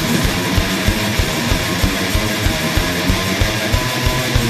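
Thrash punk band playing at full tilt: distorted electric guitars over a fast, driving drum beat, with no vocals.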